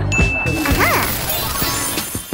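Comedy sound effects over background music: a sudden crash-like hit with a high ringing ding, followed by a quick sliding tone that rises and falls.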